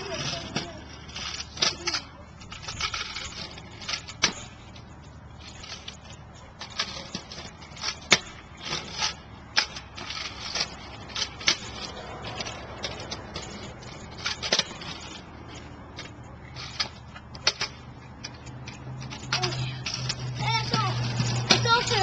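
Razor kick scooter on a concrete sidewalk: sharp, separate clacks of its wheels and deck hitting the pavement as it is hopped and ridden, scattered irregularly throughout, with a voice near the end.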